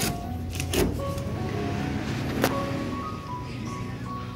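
Soft background music under camera-handling noise, with two light knocks, one near the start and one about halfway through.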